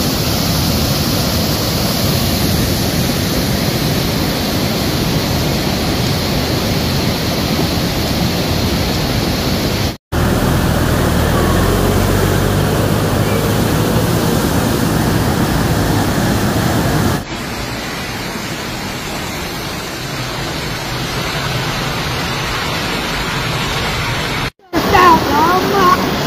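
Muddy floodwater pouring out of culverts and rushing down a walled channel: a loud, steady rush of water. It cuts out abruptly twice, about ten seconds and about seventeen seconds in, and after the second break the rush goes on somewhat quieter.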